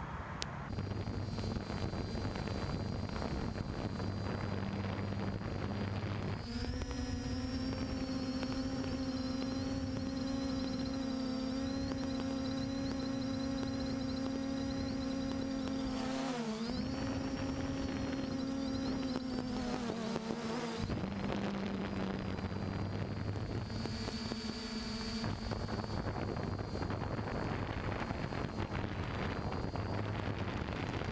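Quadcopter drone's electric motors and propellers buzzing steadily. A lower, stronger hum joins about six seconds in, dips in pitch briefly around sixteen seconds and drops away about twenty-one seconds in.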